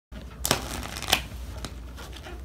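A deck of playing cards being riffle-shuffled on a wooden tabletop: a fluttering crackle of cards, with two sharp clicks about half a second and a second in.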